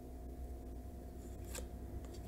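Tarot cards being handled and laid down on a wooden tabletop: soft, faint card sounds with one brief tap about one and a half seconds in.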